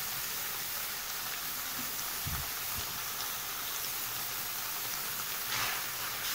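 Rice sizzling steadily as it fries in oil with onion in a pot, being toasted until golden before the broth goes in. Near the end there is a brief scrape of it being stirred.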